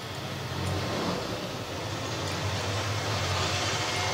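A pan of thick potato curry gravy simmering on an induction cooktop, giving a steady, even rumbling noise.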